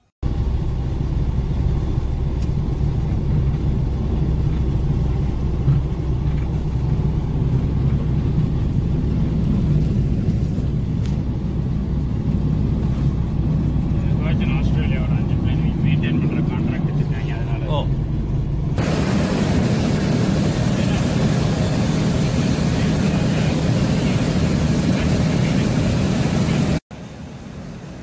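Steady drone of a light aircraft's piston engine and propeller, heard inside the cockpit in flight. From about two-thirds of the way through, a louder rushing hiss of airflow joins it, and the sound cuts out for a moment near the end.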